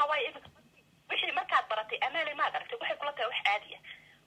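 A voice talking over a telephone line, thin and tinny, starting about a second in after a brief pause.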